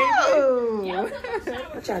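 Girls' voices: one long drawn-out vocal call that slides down in pitch over about a second and a half, then a short "uh" near the end.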